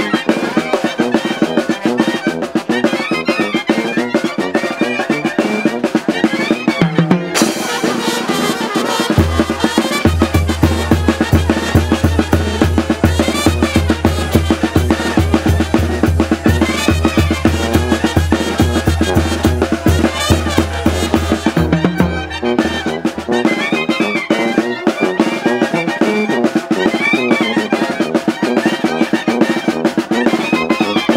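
Oaxacan brass band (banda) playing a dance tune: trumpets and other brass over a steady drum beat. A deep, steady low tone sits under the music from about nine seconds in until about twenty-two seconds.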